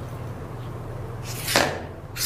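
A steady low electrical hum, with a short rushing noise about one and a half seconds in that falls in pitch as it fades.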